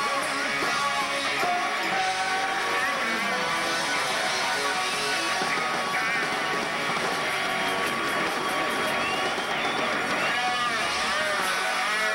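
Live rock band playing, with electric guitar to the fore over drums and keyboards.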